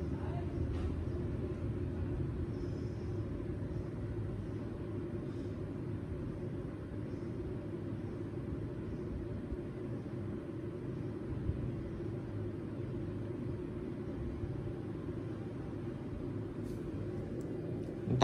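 Bass speakers driven by a Victor PS-A300 power amplifier playing deep bass during a listening test, heard as a steady low rumble with almost nothing above the low range.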